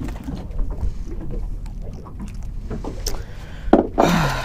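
Ambience on a small boat at sea: a steady low rumble of wind on the microphone and water against the hull, with scattered light knocks on the fibreglass deck and a sharper knock near the end.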